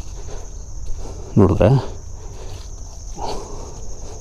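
Insects chirring in a steady, high, even tone with no breaks.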